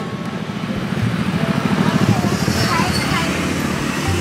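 A motor vehicle engine running close by, a low, rapid pulsing that swells about halfway through and then eases off.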